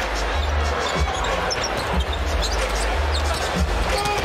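A basketball being dribbled on a hardwood court over the steady noise of an arena crowd, with a deep, pulsing bass line from the arena's music.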